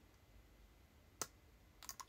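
Near silence: room tone, broken by one short, sharp click just past a second in and a few faint clicks near the end.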